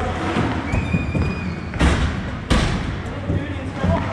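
Inline hockey play in an indoor rink: players' voices calling out, with two sharp hockey strikes, of stick, puck or boards, about two seconds in and under a second apart.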